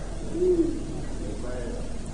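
A pause in speech on an old cassette recording: a steady low hum runs under the gap, with a brief faint murmur from a voice about half a second in and another faint one near the end.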